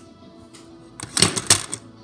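Plastic action figure falling off a plastic toy garage playset: a quick clatter of hard plastic knocks about a second in, lasting under a second.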